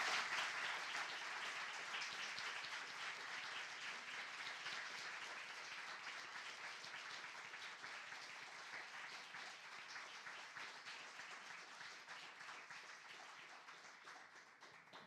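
Audience applauding, loudest at the start and slowly dying away.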